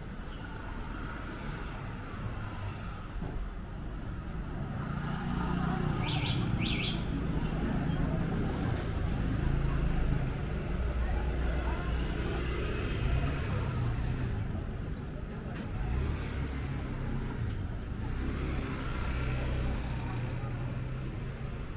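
Street ambience: a steady low rumble of road traffic with people's voices in the background, getting louder about five seconds in. Two short high clicks sound about six seconds in.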